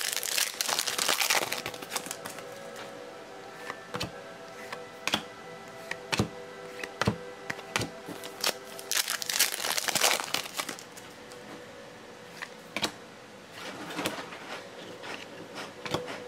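Plastic foil wrapper of a 2016 Panini Select football card pack being torn open and crinkled by hand, loudest near the start and again about ten seconds in, with scattered sharp clicks as the cards are handled.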